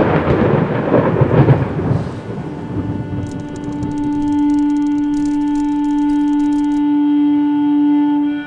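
A loud, deep rumble fades out over the first two seconds, and a low sustained note then enters and slowly swells, holding one steady pitch as the film's music begins.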